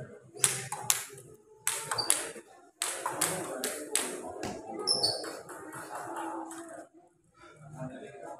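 Celluloid-style plastic table tennis ball giving a run of sharp, irregular clicks, bounced and tapped between points as the server readies to serve, with murmuring voices in the hall.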